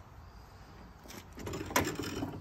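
Faint handling rustle, then one sharp mechanical click near the end.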